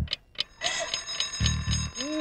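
Alarm clock starts ringing about half a second in, a fast, even, high-pitched ring that keeps going, over film background music with low drum beats.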